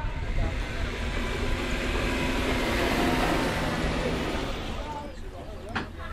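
Harness racing's mobile starting-gate pickup truck driving past, its engine and tyres swelling to a peak about halfway through and then fading away.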